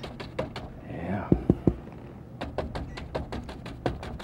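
A paintbrush being tapped repeatedly against a canvas in quick light taps, about five a second, with three heavier knocks about a second and a half in.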